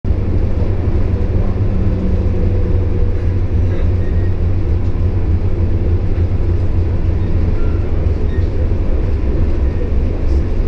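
City transit bus driving along: a steady, loud low rumble of engine and road noise heard from inside the passenger cabin.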